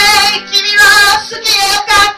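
A woman singing loudly into a microphone, live, in three sustained phrases with a wavering vibrato, each broken off by a short breath.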